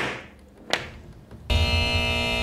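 Two sharp knocks, the first at the start and the second under a second later. After about a second and a half, a loud, steady electronic buzzer sounds, a game-show-style buzz.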